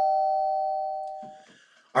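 Two-note ding-dong chime, a higher note followed by a lower one, both held and fading away over about a second and a half; a sponsor sound logo in the style of a doorbell.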